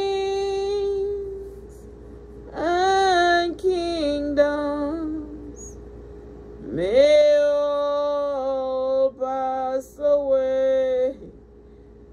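A woman singing a slow worship song in three long phrases, sliding up into each note and holding it, with short breaks between phrases.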